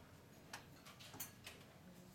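A few faint, light clinks of cutlery and dishes against a quiet dining-room background.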